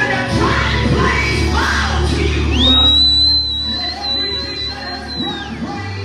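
Live gospel band music with a man singing into a microphone, over sustained low bass and keyboard notes. A high, steady whistling tone sounds for about three seconds in the middle.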